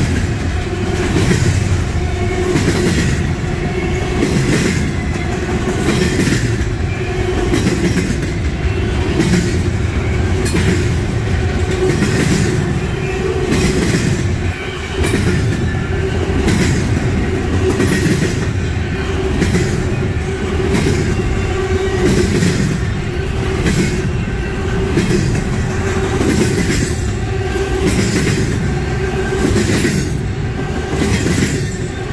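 Double-stack intermodal container train rolling past at speed: a steady, loud rumble of steel wheels on the rails with an even, rhythmic clickety-clack from the passing well cars' wheels.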